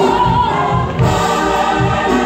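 Gospel mass choir singing with instrumental accompaniment and a steady beat.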